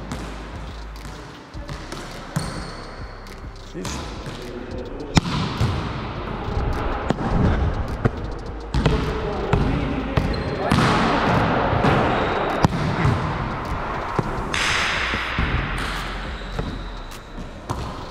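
Volleyballs being served and passed in a gym: repeated sharp slaps of hands and forearms on the ball and thuds of the ball on the wooden floor, ringing in the large hall. Faint voices run underneath, and a few seconds of louder rushing noise come in the middle.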